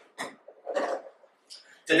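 A man clearing his throat into a microphone: a short burst just after the start and a longer one just before the middle, with a faint third sound later.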